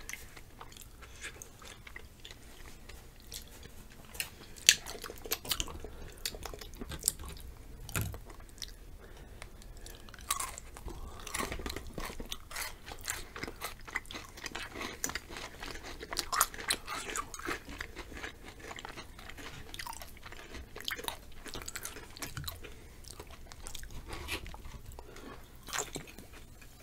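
Close-miked chewing and crunching of chocolate-covered potato chips: an irregular run of crisp crackling bites and chews, with a few sharper crunches standing out, the loudest about five seconds in.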